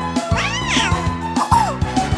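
A cartoon meow-like call over cheerful children's background music with a steady beat: one long call that rises and falls, then a shorter falling one near the end.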